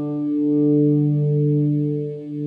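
Sustained electric guitar chord through a DigiTech Luxe detune pedal, its doubled, slightly detuned voice making the held notes waver and pulse in level every half second or so. This could be modulation or delay built into the effect, or just the two pitches interfering with one another.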